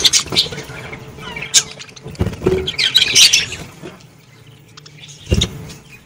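A flock of budgies chirping and chattering in bursts, loudest at the start and about three seconds in. Two dull thumps, one about two seconds in and one near the end, as birds move and flap close by.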